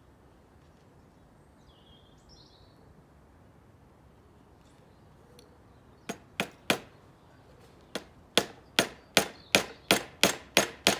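A light child's hammer driving a nail into the wooden pieces of a bird box: three quick taps about six seconds in, a short pause, then a steady run of strikes about two and a half a second.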